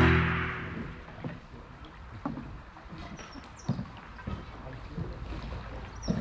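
Music fades out in the first second, then a canoe drifts quietly on a slow, shallow river, with a few scattered light knocks on the boat.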